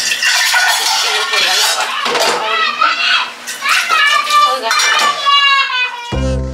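Dishes and cutlery clattering in a stainless-steel kitchen sink as they are hand-washed, with a young child's high voice chattering over it, more in the second half.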